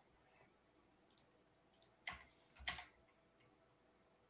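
Near silence with a few faint clicks: two small ticks about a second in, then two louder ones a little after two seconds.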